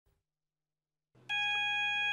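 Search and rescue call-out alarm sounding: a steady electronic tone that starts about a second in, after near silence.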